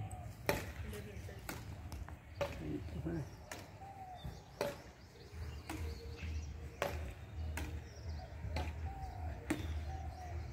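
Badminton rackets striking a shuttlecock in a back-and-forth rally, a short sharp crack about once a second.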